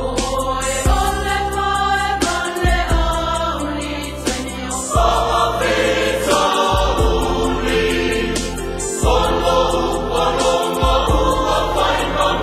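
Choir singing a slow hymn over sustained low keyboard notes, amplified through the hall's loudspeakers.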